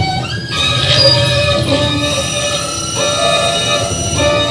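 Violin playing held notes in a free improvisation, over a dense, noisy lower layer of sound.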